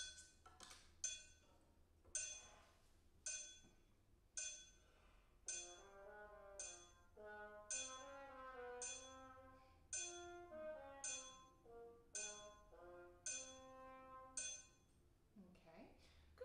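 A faint metronome ticking about once a second (around 54 beats a minute) counts in four beats, then a low brass instrument plays a short slow phrase of sustained notes over the continuing clicks. It is a practice recording of a four-measure excerpt being played back from the TonalEnergy app on a phone, so it sounds thin and distant.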